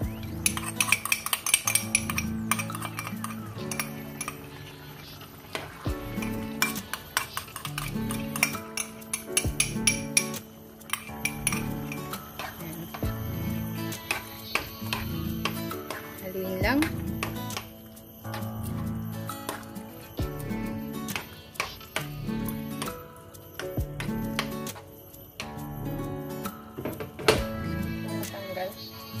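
A utensil clinking and scraping against a frying pan while a thick meat and tomato sauce is stirred, in many short irregular knocks. Background music with a steady beat plays underneath.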